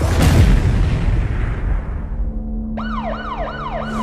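A loud explosion at the start, its rumble dying away over about two seconds. Then an emergency-vehicle siren starts up near the end in fast rising-and-falling yelps, about two and a half a second.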